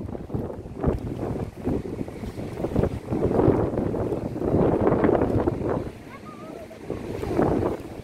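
Sea wind buffeting the microphone, with the wash of surf behind it; the gusts swell a few seconds in and drop back near the end.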